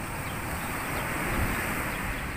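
Surf breaking and washing up the beach in a steady rush, with an uneven low rumble of wind on the microphone.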